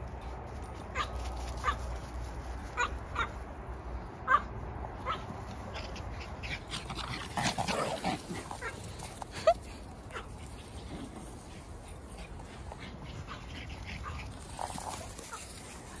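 Small dogs giving short, scattered yips and whines, busiest about halfway through.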